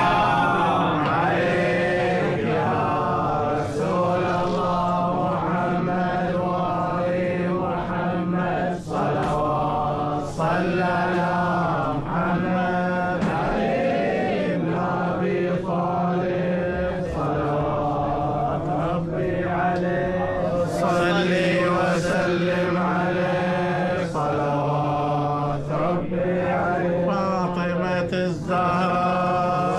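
Melodic vocal chanting that runs without pause, with a steady low drone beneath it.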